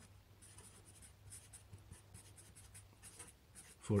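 Sharpie fine-point felt-tip marker writing on a white surface: a quick run of faint, short scratchy strokes as a word is written out, letter by letter.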